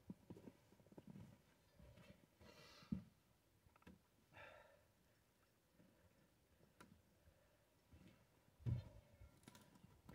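Near silence with faint scattered rustles, clicks and a couple of soft thuds, as of someone stepping about on snowy brush and handling a stopped chainsaw; the saw is not running.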